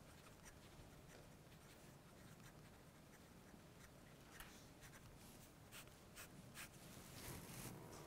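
Faint scratching of a pen writing on paper in short strokes, more of them in the second half.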